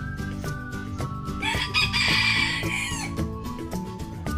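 A rooster crows once, starting about a second and a half in and lasting under two seconds. It is the loudest sound here, over background music with a steady beat.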